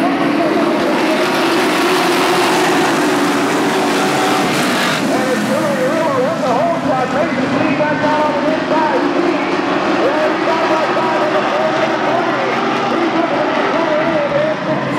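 A field of NASCAR race trucks running together in a pack around a short oval, their combined engines a loud, steady drone heard from the grandstand. Voices of nearby people are mixed in.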